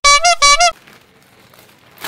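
Two short, loud, honk-like tones in quick succession, each bending upward in pitch at its end, within the first second.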